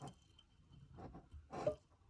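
Faint soft handling sounds of a finger pressing dried rosemary down into oil in a small glass jar, with a light click at the start and a brief voice-like sound about one and a half seconds in.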